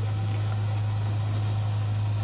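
Public-address system humming: a steady low electrical hum over a faint hiss.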